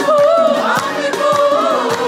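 A mixed choir of men and women singing a worship song together, with a steady beat running under the voices.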